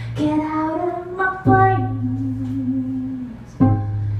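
A woman singing long held notes over acoustic guitars; the guitars strike a new chord about a second and a half in and again near the end.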